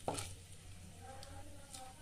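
Wooden spatula stirring whole dried red chillies frying in hot oil in a nonstick kadhai, with one sharp knock of the spatula against the pan near the start.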